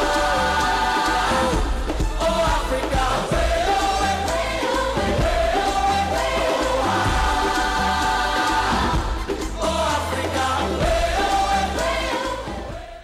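Television theme music for a programme's opening titles: a sung, choir-like vocal melody with long held notes over a steady, repeating bass line.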